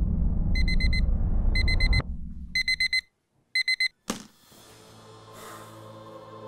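Electronic alarm beeping: four groups of four quick high beeps, one group a second. A low rumble underneath cuts off suddenly about two seconds in, and a sharp click comes just after the last beeps. Soft ambient music fades in near the end.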